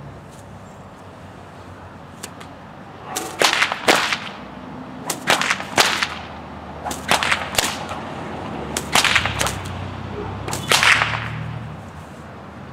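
An 8-foot, 12-plait cowhide bullwhip cracking in a fast figure eight: after a few quiet seconds comes a run of about ten sharp cracks, mostly in close pairs, one crack in front and one behind in each loop, with the swish of the thong between.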